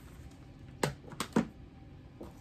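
Plastic Blu-ray cases being handled: a few sharp clicks, three in quick succession in the second half.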